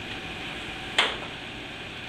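One short, sharp knock about a second in, over a steady room hum.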